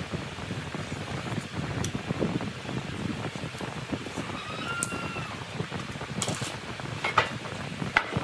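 Steady wind-like rumble and hiss, with a few sharp knocks of wooden boards being handled on a wooden workbench near the end.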